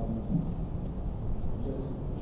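A man's voice talking at a distance from the microphone, faint and indistinct in a large room, over a steady low rumble.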